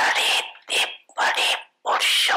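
A woman speaking into a microphone in four short phrases with brief pauses between them.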